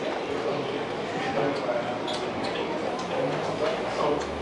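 People talking in a room, with a few faint taps or clicks.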